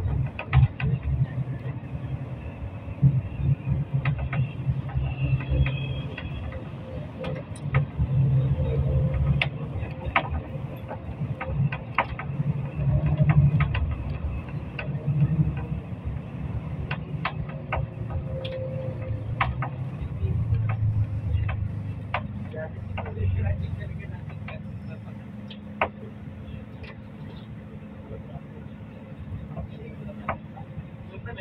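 Engine and road noise heard from inside a moving vehicle: a low rumble that rises and falls, with frequent sharp rattles and clicks. Near the end it settles to a quieter, steadier hum.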